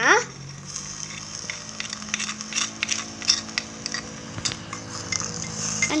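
Metal spoon stirring chopped tomatoes in a small clay pot over a wood fire, with many little clicks and scrapes of the spoon against the pot over a faint sizzle of frying.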